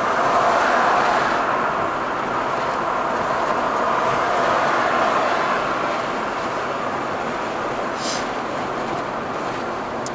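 Steady road noise of a car driving along, tyres and wind heard from inside the cabin, with a brief click about eight seconds in.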